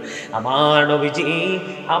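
A man's voice chanting one long, drawn-out melodic phrase in the sing-song delivery of a waz preacher.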